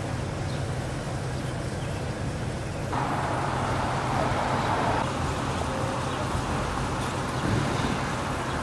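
Road traffic going by on a wet street, over a steady low hum. A vehicle passes about three seconds in, its tyre hiss louder for about two seconds.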